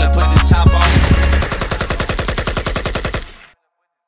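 Hip-hop beat playing without vocals, its heavy bass cutting off about a third of the way in. Then a long, rapid, evenly spaced burst of machine-gun fire that fades out and stops shortly before the end.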